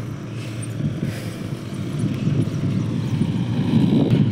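Low rumbling wind and riding noise on the microphone of a camera carried on a moving bicycle, steady but uneven, growing a little louder toward the end.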